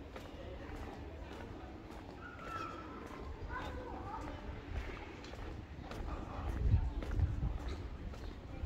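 Footsteps at a walking pace on a hard surface, with faint voices of other people talking in the background and a steady low outdoor rumble.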